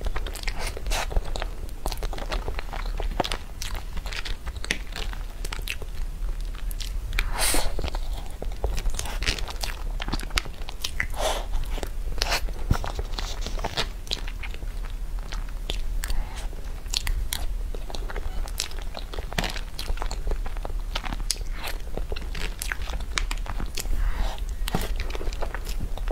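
Close-miked eating sounds of soft taro-paste crepe cake with cream: wet chewing, lip smacks and many short mouth clicks throughout, with a few louder smacks.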